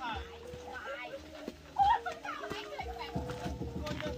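Background music with held notes under the voices of a group of people chattering and calling out, with one loud exclamation a little under two seconds in.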